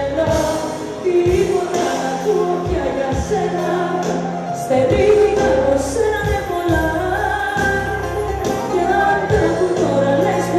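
A woman singing a pop song live into a handheld microphone over a full band, with a steady bass line and a regular drum beat.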